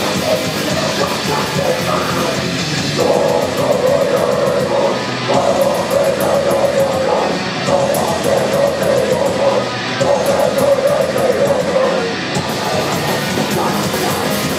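Live heavy metal band playing loud: distorted electric guitars, bass and drums, with a riff that repeats in phrases of about two seconds from about three seconds in.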